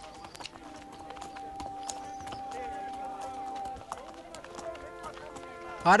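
Soft, sustained music chords under faint background voices, with a scatter of light clicks from donkey hooves clip-clopping and feet walking.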